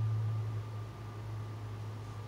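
A steady low hum with a faint, even background hiss.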